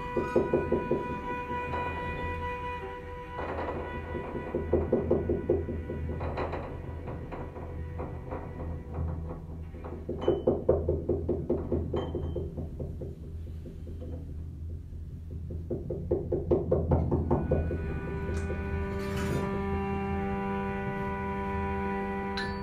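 Free improvisation on violin, cello and percussion: held bowed tones with bursts of rapid repeated strokes that come back every few seconds. Near the end it settles into a sustained chord of several bowed notes.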